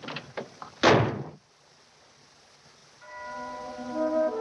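A single loud thud about a second in, then near silence, then soft orchestral film music entering near the end with sustained woodwind notes over a held chord.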